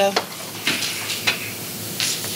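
Steady hiss of room and microphone noise, with a few faint soft rustles.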